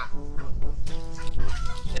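A chicken clucking in a few short calls.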